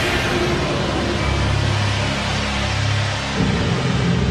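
Rushing, rumbling sound effect of a spacecraft's descent rockets firing as it sets down, its hiss slowly fading. Dramatic music with low held notes runs underneath and shifts near the end.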